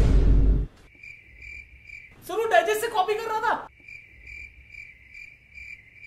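Cricket-chirping sound effect marking an awkward silence, chirping about twice a second. It opens with the tail of a loud noisy hit and is interrupted in the middle by a short, loud voice-like pitched sound.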